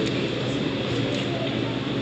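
Steady restaurant dining-room background noise: an even hum with indistinct voices of other diners.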